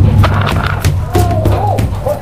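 Paintball guns firing and balls striking around a wooden barricade: several sharp cracks and hits in quick, uneven succession, over a steady low hum and distant shouting.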